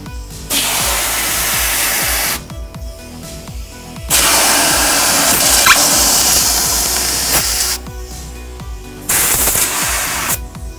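Compressed-air blow gun hissing in three bursts, about two seconds, then a longer three and a half, then a short one near the end, as air is forced into the seam between a fiberglass part and its mold to pop the part free. Background music plays underneath.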